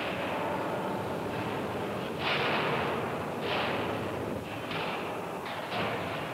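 Heavy steel-mill machinery as a red-hot ingot is tipped off the pot car onto the rolling-mill roller table: a continuous rough rumbling noise with about five louder surges, the loudest about two seconds in.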